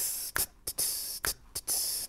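A slow steady beat of mouthed 'tss' ride-cymbal sounds, three in all, alternating with sharp finger snaps. It marks the metronome pulse on beats two and four for swing practice.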